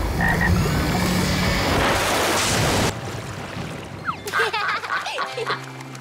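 Loud rush of water gushing into a pond, cutting off suddenly about three seconds in. Then a few short cartoon duck quacks and duckling peeps.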